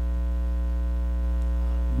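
Steady electrical mains hum with a ladder of overtones, picked up through the microphone and sound system, holding at an even level.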